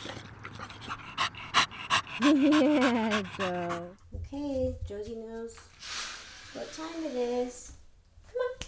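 A dog lapping water from a bowl, quick wet clicks, for about the first two seconds. Then a dog whining in three long cries that slide up and down in pitch, with a brief hiss near six seconds.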